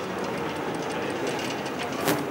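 Steady background noise of people moving about a large hard-floored hall, a low rumble with faint footsteps clicking on the floor.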